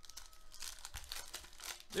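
A foil trading-card pack wrapper being torn open and crinkled by hand: rapid, irregular crackling that grows busier toward the end.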